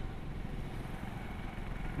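Steady road noise from riding through city traffic: a low rumble under an even hiss, with no distinct events.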